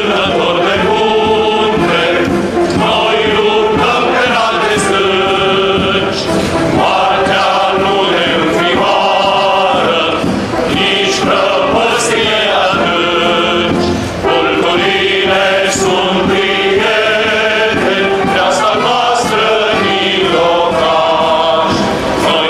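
Recorded music: a male choir singing.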